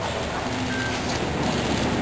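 Steady rumbling background noise inside a large crowded building.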